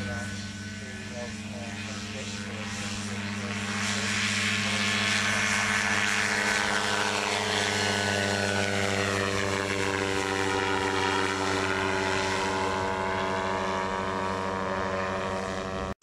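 Quicksilver MX ultralight's two-stroke engine and pusher propeller running at a steady pitch as the aircraft flies close past. It gets louder about four seconds in, with a sweeping whoosh in the higher sound as it goes by.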